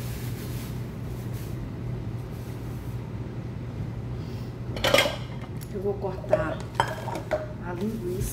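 Kitchen clatter of pots and metal utensils being handled, with a loud clang about five seconds in and several sharp clinks after it, over a steady low hum.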